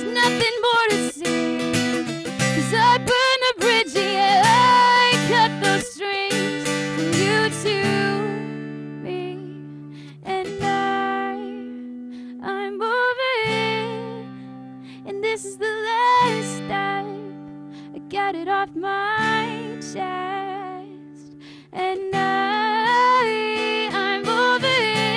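A woman singing solo, accompanying herself on a strummed acoustic guitar. From about eight seconds in the playing thins to softer held chords under her sung phrases, and fuller strumming returns near the end.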